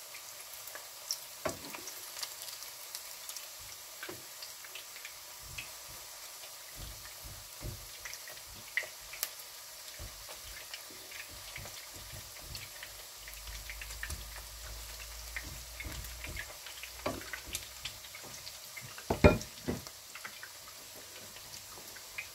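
Meat patties shallow-frying in oil in a pan: a steady sizzle with scattered small pops and crackles. A few louder knocks come in the second half, the loudest just after 19 seconds.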